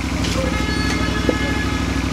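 A steady engine-like drone with a rapid, even low pulsing, with faint steady high tones above it.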